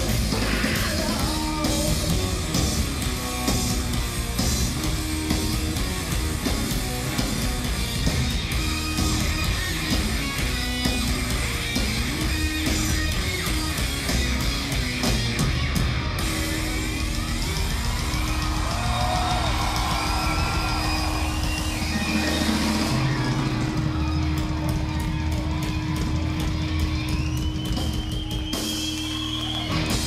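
Live rock band playing loudly: distorted electric guitar, bass and drums. A long held guitar note runs through the last third.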